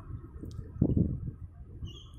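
Low rumble of wind on the phone microphone, with a louder gust about a second in and a short high bird chirp near the end.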